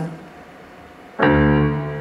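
Keyboard playing a piano chord: struck about a second in and held, ringing and slowly fading.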